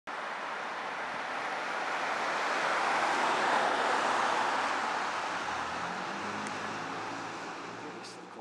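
A car passing on the street: tyre and road noise that swells to a peak about three seconds in and then fades away.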